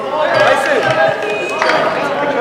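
Crowd of spectators and players talking and calling out over one another in a gym, several voices at once with no one voice standing out.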